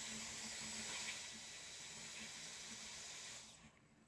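Handheld hot-air hair styler running: a steady airy hiss with a faint high whine from its motor, cutting off about three and a half seconds in.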